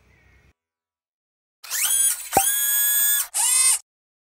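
The outro music fades out, and after a short silence a brief electronic logo sound effect plays: three short, bright, buzzy tones with a sharp click partway through, ending suddenly just before the logo settles.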